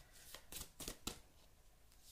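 Faint handling of a deck of tarot cards: a few brief, soft card rustles in the first second or so.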